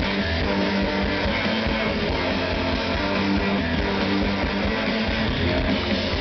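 Rock band playing live at full volume: electric guitars and drums with sustained notes, a violin bowed in the mix.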